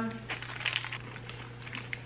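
Light, irregular crinkling of a wrapper being handled close to the microphone, over a steady low hum.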